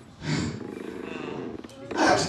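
A man's voice through a handheld microphone making a low, rough, drawn-out vocal sound. It starts abruptly a fraction of a second in and lasts about a second and a half.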